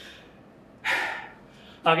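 A man's single audible breath about a second in, taken in a pause between sentences, with speech starting again near the end.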